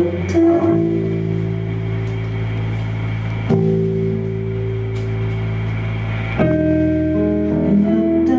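Live indie rock band playing an instrumental passage: slow, held electric guitar chords that change about every three seconds.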